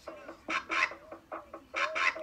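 Hip-hop track playing back: a run of short vocal sounds in the song's intro with bending pitch, about three or four a second.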